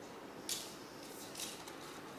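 Paper sheets rustling faintly in a few short bursts as a chart is handled, the clearest about half a second in.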